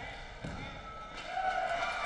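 A single dull thud about half a second in, as a karate fighter is taken down and lands on the foam tatami mat, with voices in the background.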